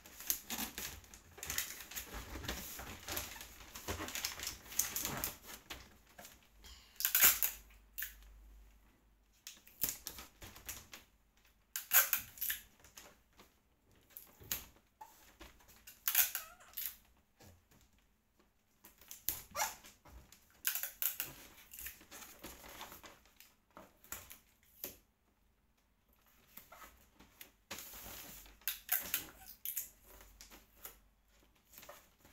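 Wrapping paper crinkling and rustling as hands fold and press it around a large box, in uneven spells of crackling with short quiet gaps and a few sharper crackles.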